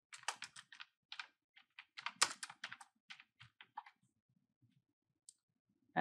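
Typing on a computer keyboard: a quick, uneven run of about a dozen keystrokes over the first four seconds, then a few faint clicks.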